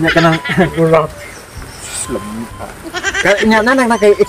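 People talking in two short animated bursts, one at the start and one near the end, the second drawn out with a wavering pitch.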